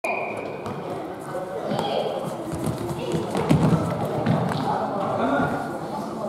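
Indoor soccer in an echoing gymnasium: players' voices calling out, with a few thuds of the ball being kicked and bouncing on the wooden floor, the loudest about three and a half seconds in.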